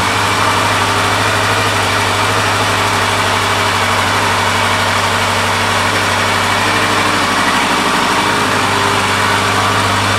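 Honda CB1100's air-cooled inline-four engine idling steadily.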